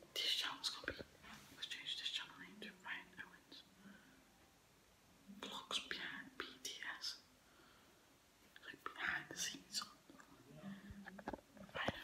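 A teenage boy whispering to the camera in short phrases, with two brief pauses.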